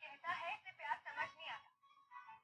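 Speech: a person's voice talking.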